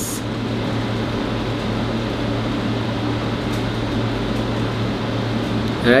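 Steady background hum and hiss in a small room, with a constant low droning tone and no other events.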